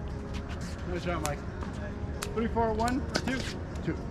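People's voices talking with no clear words, with a few sharp pops of pickleballs struck on paddles between about two and three seconds in.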